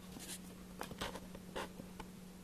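Faint scratching and clicking, four or five short scrapes spread across two seconds, over a steady low hum.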